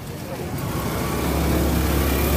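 A road vehicle passing close by: a low engine rumble that grows steadily louder.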